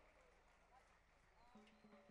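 Near silence: a pause between spoken announcements.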